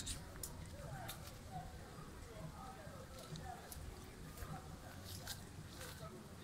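Faint wet clicks and smacks of a man eating a ripe star apple (caimito), biting and sucking its soft pulp, over a low steady rumble.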